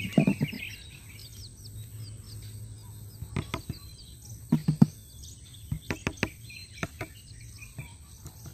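Chicks peeping repeatedly in short high chirps, with several sharp taps and knocks of a hand on the side of a plastic bucket coming in small clusters, the loudest about five seconds in.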